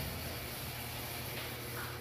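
Kick scooter's small plastic wheels rolling steadily on a concrete floor, a low even rumble and hiss.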